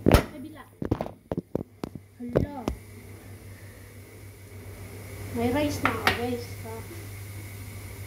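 Handling noise from the recording phone being moved and set in place: a quick run of knocks and taps over the first three seconds, over a steady low hum.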